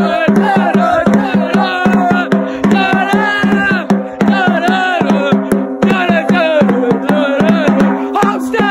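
A drum beaten in a fast, steady rhythm, several strikes a second, with voices singing over it and a steady held tone underneath.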